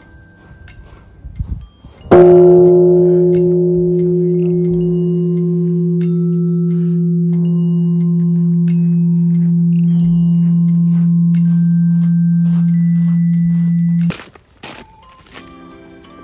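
Large bronze Japanese temple bell (bonshō) struck once with its hanging wooden striker (shumoku) about two seconds in: a loud strike, then a long deep hum that holds steady for about twelve seconds before cutting off suddenly.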